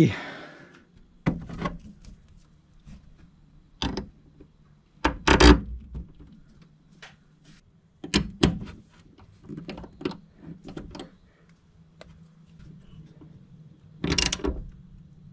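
Irregular metallic clicks and knocks of hand tools, nuts and bolts being worked at fuse holders and bus bars, the loudest knocks about five and eight seconds in, with a run of lighter quick ticks around ten seconds.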